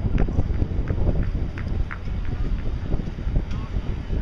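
Wind buffeting the microphone in a steady low rumble, with indistinct crowd voices and scattered brief high chirps in the background.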